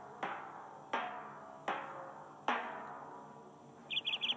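A recorded song's intro playing from a phone's speaker: a struck chord about every three-quarters of a second, each ringing out and fading. Near the end comes a quick run of high chirping notes.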